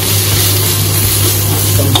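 Julienned vegetables sizzling in a hot iron wok as they are stir-fried and tossed with a spatula, over a steady low hum.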